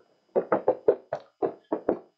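Footsteps of several people in heeled shoes walking across a hollow stage: quick, uneven knocks, about four or five a second, each cutting off short.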